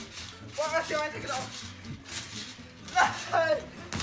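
Two brief wordless vocal outbursts from a young man, about a second in and again about three seconds in, over background music.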